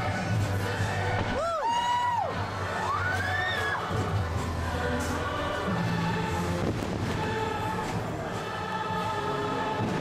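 Fireworks-show music playing over outdoor loudspeakers, with spectators whooping and cheering; two or three rising-and-falling whoops come in the first few seconds.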